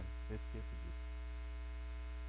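Steady electrical mains hum with a stack of evenly spaced overtones, picked up in the studio's microphone and mixer chain during a lull in talk.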